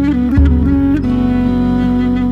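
Music with no singing: a mey (Turkish double-reed pipe) holds a long melody note with small bends, over acoustic guitars and a low bass line.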